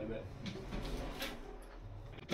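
Faint short scrapes and taps of tile wedges and ceramic hexagon tiles being worked at the bottom row of a freshly tiled shower wall, two small clicks about half a second and a second and a quarter in.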